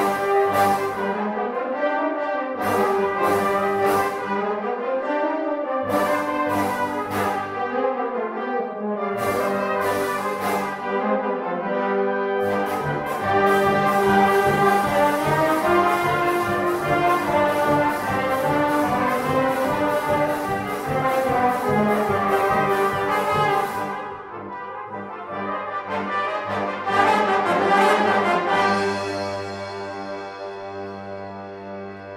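Brass band of cornets, horns and trombones playing with a drum kit. Cymbal and drum strikes punctuate the brass for the first dozen seconds. A steady, busy drum rhythm then runs under the band until about 24 s. The music swells to a loud chord a few seconds before the end and then tapers off.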